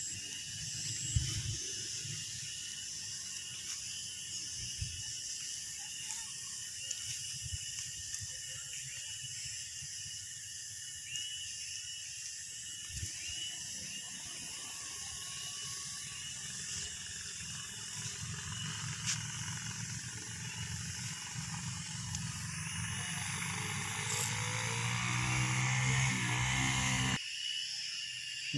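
Outdoor ambience of steady insect chirring, with wind rumbling on the microphone. A louder low hum swells near the end and cuts off just before it finishes.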